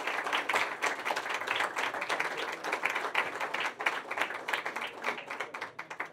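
Audience applauding: many hands clapping densely, thinning out and fading near the end.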